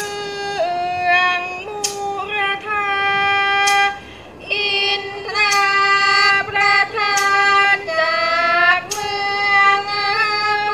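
A woman singing in Thai classical style, holding long melismatic notes that slide from pitch to pitch, with a short break for breath near the middle. Sharp percussion strikes keep time about every one and a half to two seconds.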